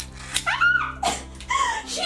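A sharp click as a Sky Dancers doll is launched from its pull-string launcher, followed by a woman's startled shrieks and yelps, several high cries that swoop up and down as the spinning doll flies at her.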